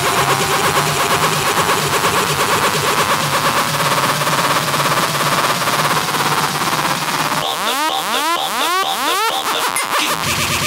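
Electronic dance music build-up in a house DJ mix: a dense, fast-paced texture under a slowly rising tone. About seven and a half seconds in the bass drops out and a run of quick rising synth sweeps takes over.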